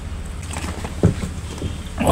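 A person chewing a mouthful of rice and curry with the mouth closed: soft, short mouth sounds, the clearest about a second in. Under them runs a steady low rumble.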